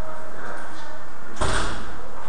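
A single sharp thump about a second and a half in, with a short ring fading after it.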